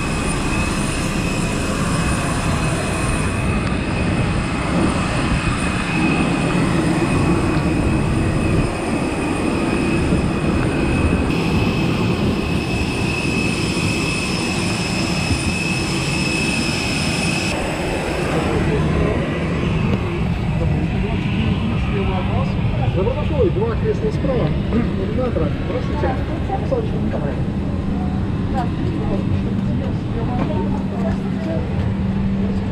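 Steady loud rumble with a high whine from jet aircraft and ground equipment on an airport apron, which ends about 18 s in. After that comes the steady ventilation hum of an airliner cabin during boarding, with passengers talking.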